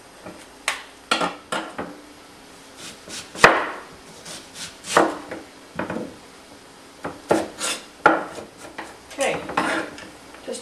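Kitchen utensils clattering on pans and a cutting board: irregular knocks and scrapes about once a second, the loudest about three and a half seconds in.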